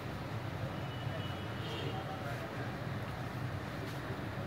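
A steady low hum of background noise, even in level throughout.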